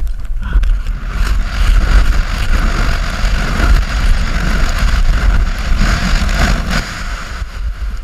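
Wind buffeting the camera's microphone at speed, with the hiss and scrape of skis carving on packed snow, rising about half a second in and holding steady.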